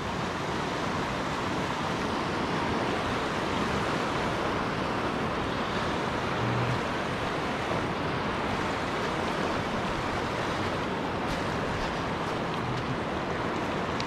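Fast river water rushing steadily over shallow rapids.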